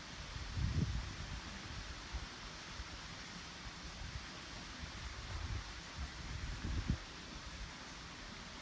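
Outdoor breeze: a steady hiss with low gusts buffeting the microphone a few times, the strongest about a second in and near the end.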